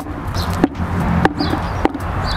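Plastic traffic cones set down on a concrete deck, with footsteps between them: about four sharp taps, evenly spaced, over a low steady rumble.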